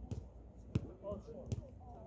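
A basketball bouncing on a hard outdoor court: three bounces, under a second apart.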